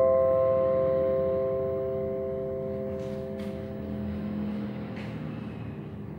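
Acoustic guitar's final chord ringing out and slowly dying away, a few held notes fading over several seconds. A couple of faint clicks come about halfway through.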